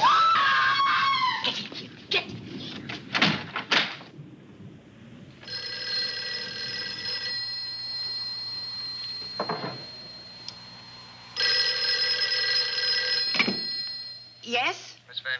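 Desk telephone bell ringing twice, each ring about two seconds long with some four seconds between them. Before the rings, in the first few seconds, a woman's high cry and a few sharp knocks.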